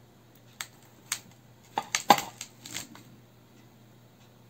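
A kitchen knife slicing an English cucumber, the blade knocking sharply on the surface beneath with each cut: a few irregular taps, coming quickest about two seconds in.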